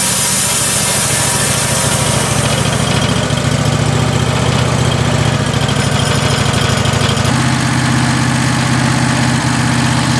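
Wood-Mizer LX150 portable bandsaw mill's engine running steadily, with the hiss of the blade finishing a cut through white pine fading over the first few seconds. About seven seconds in, the engine note changes abruptly.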